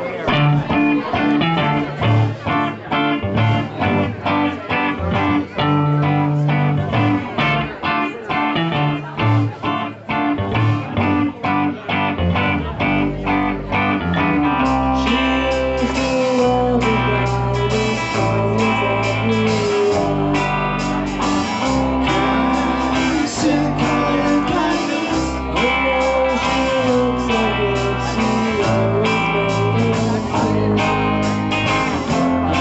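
Live rock band playing a new song just after a count-in: electric guitars over drums. A rhythmic, sparser opening gives way about halfway through to a fuller sound with a heavy bass line and a bending melodic line on top.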